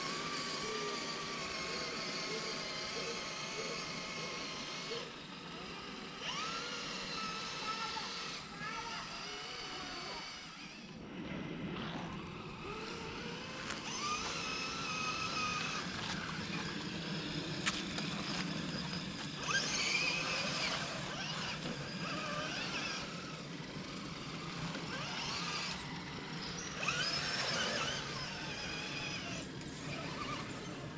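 Electric motors and geartrains of two RC rock crawlers whining as they are driven through a shallow muddy creek, the pitch rising and falling with the throttle again and again.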